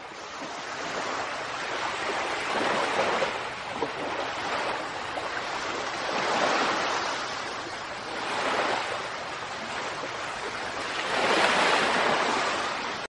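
Ocean surf: waves breaking on a sandy beach, the rushing wash swelling and easing four times.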